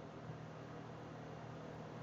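Faint steady hiss with a low hum underneath: the microphone's room tone between spoken remarks.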